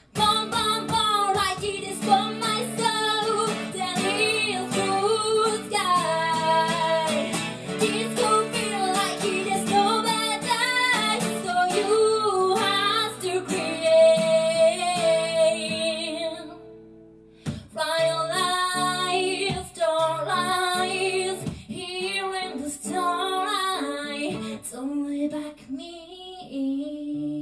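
A woman singing live to her own strummed acoustic guitar through a small PA. Voice and guitar break off briefly about two-thirds of the way through, then come back in together.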